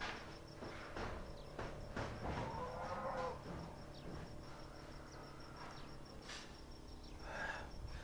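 Quiet outdoor background with one faint, distant drawn-out animal call about two and a half seconds in, lasting about a second, over a faint steady high pulsing tone.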